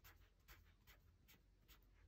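Faint, short strokes of a felt-tip marker on paper, about two a second, as a row of digits is written by hand.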